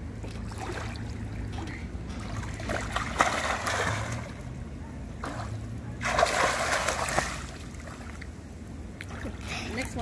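Pool water splashing as a swimmer does a front flip and a back flip: two bursts of splashing, about three seconds in and a louder one about six seconds in.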